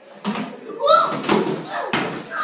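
A child tumbling off a toilet onto a tiled floor: several sharp knocks and a clatter as the toilet seat is knocked loose, with a short cry about a second in.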